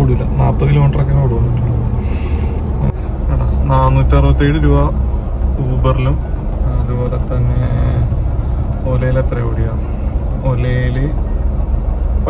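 A man talking in spells inside a car, over a continuous low hum.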